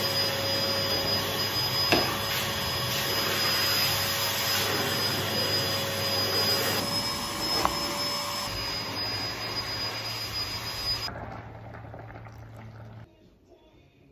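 A steady whir from a household appliance's electric motor, with a faint constant high whine. It cuts off suddenly about eleven seconds in, and a low hum stops about two seconds later.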